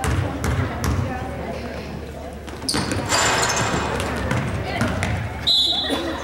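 A basketball bounced three times on a hardwood gym floor, then a swell of crowd voices for a couple of seconds, and a short whistle blast near the end.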